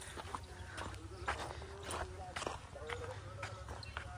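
Footsteps on a dry dirt path, a crunch about every half second.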